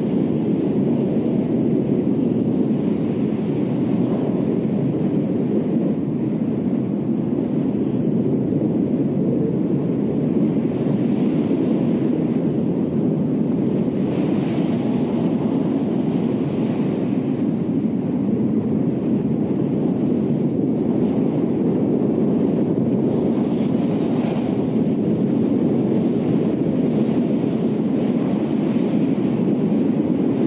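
Steady low rushing wind of a storm or tornado, a wind sound effect, swelling slightly about halfway through.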